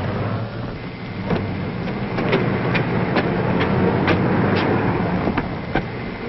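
A motor vehicle's engine running steadily with a low hum, and a string of about ten short, sharp clicks over it.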